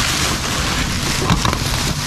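Thin plastic bag crinkling and rustling steadily as it is pulled out of a cardboard box.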